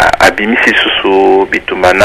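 Speech: a voice talking in a radio broadcast, with some drawn-out syllables.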